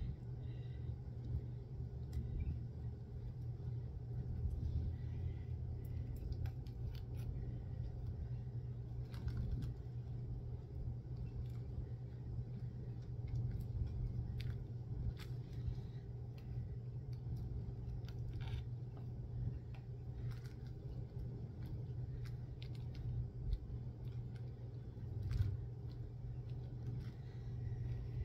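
Small scattered clicks, taps and scrapes of a tool and fingers working texture paste onto a glass bottle, over a steady low hum.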